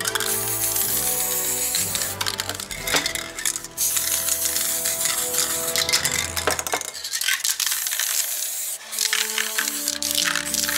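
Aerosol spray-paint can hissing in bursts as paint is sprayed, with sharp clicking rattles of the can's mixing ball as it is shaken. Background music plays over it.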